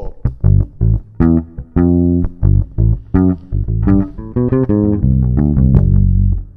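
Electric bass guitar played fingerstyle: a rock riff in A minor drawn from the melodic minor scale, a quick run of plucked notes, some clipped short and some left ringing, ending on a long held note.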